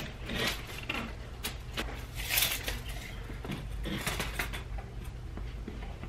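Scattered light scrapes, rustles and clicks of a tape measure being pulled out and set against a drywall wall as someone shifts about, over a steady low hum.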